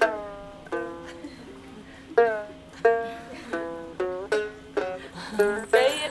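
Đàn tính, the Tày three-string lute with a gourd body, plucked one note at a time in a slow, halting tune. Each note starts sharply and rings briefly before dying away.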